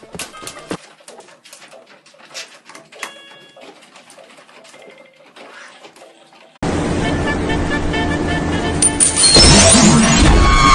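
A raccoon pawing at a toy electronic keyboard, making faint clicks and a few brief electronic notes. About two-thirds of the way through, this cuts suddenly to much louder music, which gets louder still near the end.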